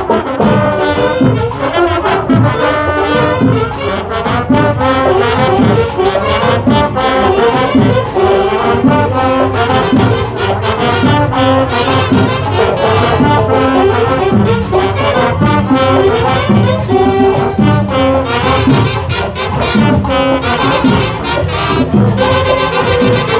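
Marching band playing a lively tune at close range: trombones, trumpets and saxophones over a steady beat.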